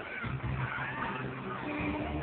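A large crowd of fans screaming and cheering, with a steady low hum underneath.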